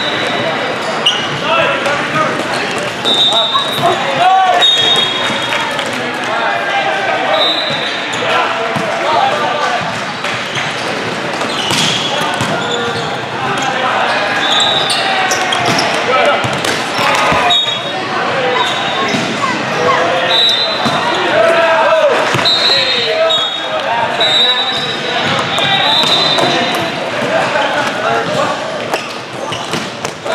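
Many overlapping voices of players and spectators echoing in a large sports hall, with the sharp smacks of volleyballs being hit and short high-pitched squeaks every few seconds.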